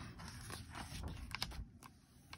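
A book page being turned by hand: faint paper handling, with a few soft clicks and taps near the middle.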